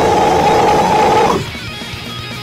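Death metal music: a loud, held harsh vocal over distorted electric guitars and drums, cutting off about one and a half seconds in, after which the guitars and drums carry on more quietly.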